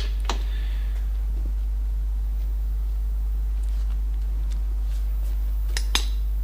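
A couple of sharp metal clicks from a socket and long bar on the car's rear hub nut at the start, then a few faint clicks and more clicks near the end, over a steady low hum.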